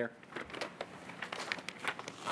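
Rustling and crinkling: an irregular run of short crackles, as of something being handled.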